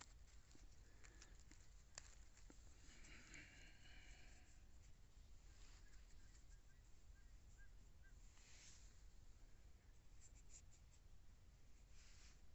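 Near silence: faint outdoor room tone with a few soft clicks.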